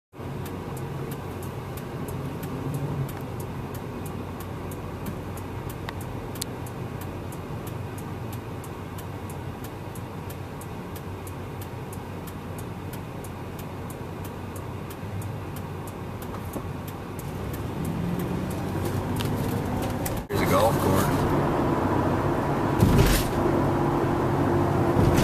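Car interior at idle: a low engine hum under a steady, fast ticking. About twenty seconds in it cuts sharply to the car on the move, with louder engine and road noise.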